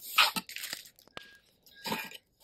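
Hands handling a wooden box on a paper-covered desk: short bursts of scraping and rustling, one near the start and another near the end, with a few small clicks between.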